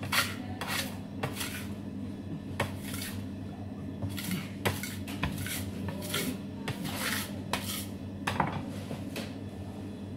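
Metal dough scraper scraping and knocking on a stainless steel worktable in short, irregular strokes, roughly two a second, over a steady low hum.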